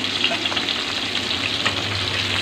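Tilapia steaks frying in a metal wok, sizzling steadily in bubbling marinade with fine crackling.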